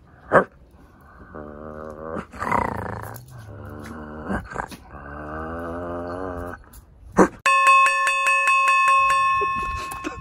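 A dog growling low in two long stretches, with a short louder vocal outburst between them and a few sharp clicks. About seven and a half seconds in, a steady ringing chime tone comes in and holds to the end.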